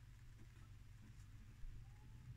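Near silence: room tone with a steady low hum.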